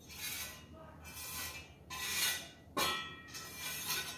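Pointed steel mason's trowel scraping and cutting into fresh cement screed in a series of short strokes, about five in four seconds.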